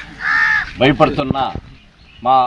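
A crow cawing once, a single held call of about half a second.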